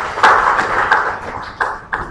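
Audience applauding, many hands clapping at once, loudest early on and dying away toward the end.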